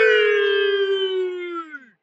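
A single long, high hoot from a spectator in the stadium crowd, held on one note for nearly two seconds, sagging slightly and then sliding down as it trails off near the end.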